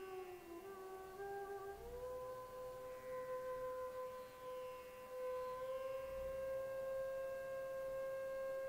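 Faint background music: a soft sustained tone that steps up to a higher note about two seconds in and holds steadily.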